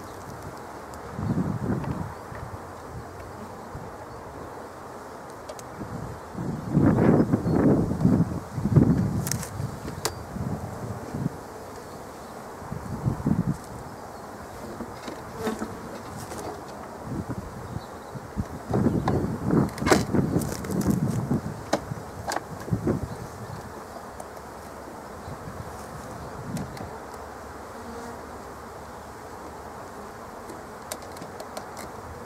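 Honeybees buzzing steadily around a hive entrance, with two louder bouts of knocking and scraping as a pollen trap is handled and pushed into place at the entrance.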